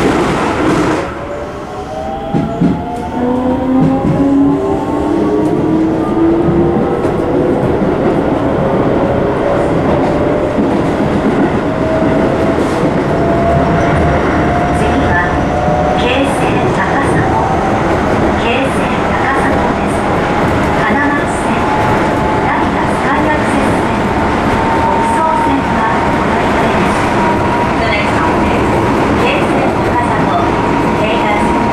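Inside a Keisei 3700-series commuter train car: the traction motors' whine, in several tones, rises slowly in pitch as the train accelerates, over steady running rumble and the clack of wheels over rail joints. In the first second, the rush of a train passing close alongside cuts off.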